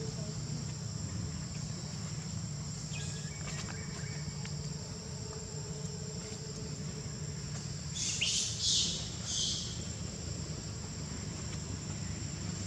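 Steady high-pitched insect drone, with three short shrill calls close together about eight seconds in.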